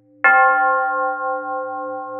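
A deep bell-like tone struck once about a quarter second in, ringing on and slowly dying away over a steady, wavering drone of sustained tones.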